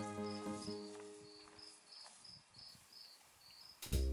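Crickets chirping at night, short high chirps about twice a second, while sustained music fades out. Piano music comes in loudly just before the end.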